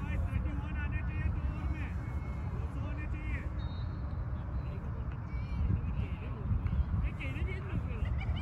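Distant voices calling across an open field, in short bursts, over a steady low rumble of wind on the microphone.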